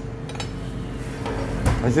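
A few light clinks and taps of metal kitchen utensils against a metal bowl and stone counter, with a duller knock near the end.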